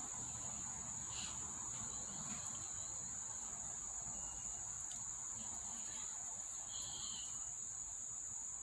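An insect chorus of crickets or similar insects: one steady, high-pitched trill with no change in pitch. Two faint, brief sounds come about a second in and near the end.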